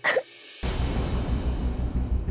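A short dramatic sound-effect hit at the very start, then background score with a low, pulsing beat coming in about half a second in.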